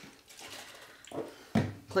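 Faint splashing of a liquid poured into a cupped hand, a post-shave splash to clean the skin and close the pores. A man's voice starts near the end.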